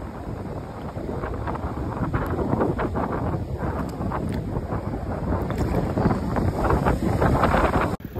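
Wind buffeting the microphone in a steady rough rush, with the wash of small waves on the beach underneath.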